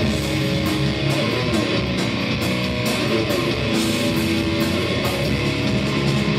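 Live crossover thrash band playing an instrumental passage: distorted electric guitar riffing over bass and drums, with cymbals struck at a steady beat.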